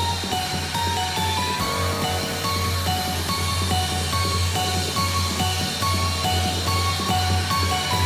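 Live electronic music played through a concert PA: a held low bass note under a repeating figure of short synth notes.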